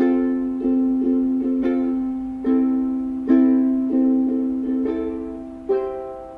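Ukulele strummed in slow chords, each strum ringing and fading before the next, about one to two strums a second, as the instrumental opening of a worship song.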